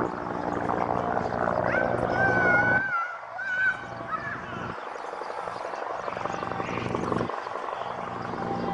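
Distant raised voices, drawn-out and wavering, in the first three seconds over a steady low hum, then quieter.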